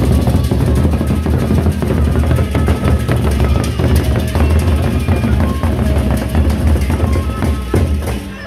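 Sasak gendang beleq ensemble playing: large double-headed barrel drums beaten in fast, dense interlocking strokes, with hand cymbals clashing over them.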